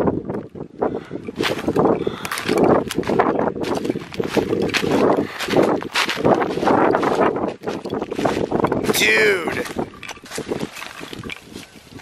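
Footsteps crunching and rustling through dry corn stubble, uneven steps at a walking pace. A brief high falling call cuts in about nine seconds in.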